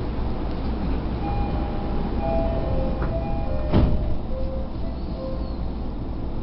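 Commuter train running between stations, heard from inside the car: a steady rumble and rush. A few short high tones come and go in the middle, and there is a single knock a little before four seconds in.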